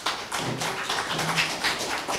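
Audience applauding: many hand claps in a quick, irregular patter.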